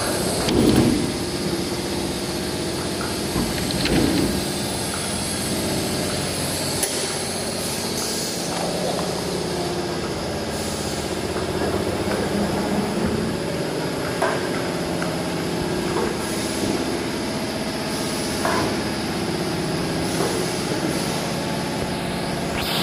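Steady running noise of a CNC wood router line with automatic board loading and unloading, with short knocks and clatters every few seconds, the loudest about a second in.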